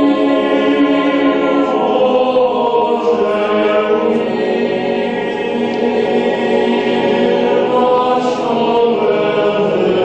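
Boys' choir singing a sacred choral piece in sustained chords that shift every few seconds.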